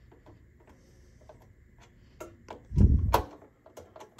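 Faint, irregular small clicks of a screwdriver turning the Peerless Assassin CPU cooler's mounting screws, which are being brought down to finger tight, with resistance felt as they seat.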